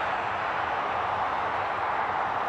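Steady rush of road traffic, an even noise of cars on the road with no distinct events.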